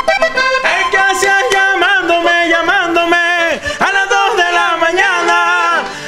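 Vallenato music led by a diatonic button accordion playing a melody.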